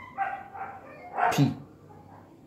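A man's voice saying a single short word, "P", about a second in, with quiet room sound around it.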